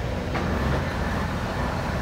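Trackmobile rail car mover running with a steady low engine drone as it pulls a string of covered hopper cars.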